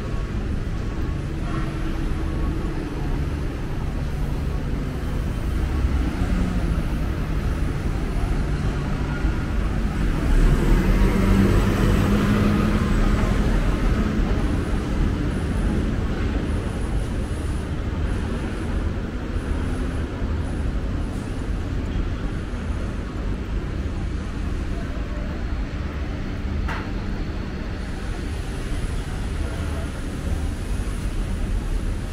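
City road traffic running past, a steady wash of engines and tyres, with one vehicle swelling louder and fading again about ten to fourteen seconds in.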